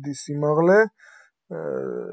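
A man's voice: speech only. A drawn-out phrase rises in pitch, then there is a short pause about a second in, and the voice starts again.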